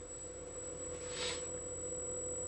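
A steady electrical hum with a faint high whine above it, and a soft brief hiss about a second in.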